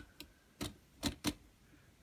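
Light plastic clicks from a LEGO robot model as its rotating body and head are turned by hand: about four short, sharp clicks spread over a second or so.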